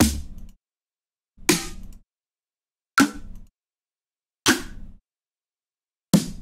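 Four different electronic future bass snare drum samples auditioned one after another from a sample browser, each a sharp hit with a short tail, about one and a half seconds apart.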